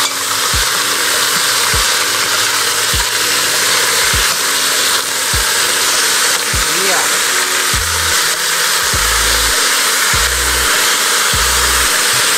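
Chicken pieces sizzling steadily as they sear in a hot stainless-steel pot, being turned over to brown the other side. Background music with a steady beat plays underneath.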